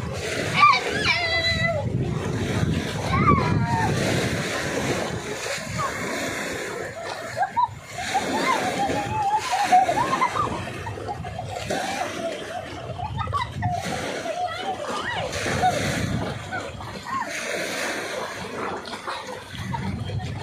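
Sea water splashing and sloshing around people playing in the shallows, with voices calling out over it throughout.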